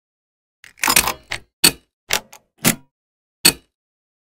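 A series of sharp plastic clicks and snaps, about seven in all, from the air filter housing cover clamps of a 2011–2017 Ford Explorer being pressed down and locked into place. The first few come close together about a second in, and the rest follow at uneven gaps of about half a second.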